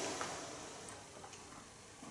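A faint sip through a drinking straw, a soft sucking rush that fades out within about half a second, followed by a few faint light clicks.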